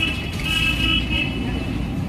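A vehicle horn sounding one held note for a little over half a second, starting about half a second in, over the low rumble of street traffic.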